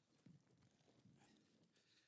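Near silence: room tone with only a few very faint soft sounds.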